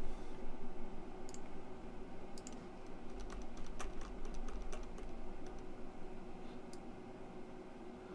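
Scattered, irregular light clicks from a computer mouse and keyboard during photo editing, over a steady low electrical hum, with a low thump at the very start.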